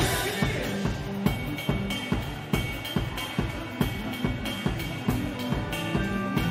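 Live drum kit playing a steady kick-and-snare beat with cymbals, in time with the band's music. A cymbal crash lands right at the start.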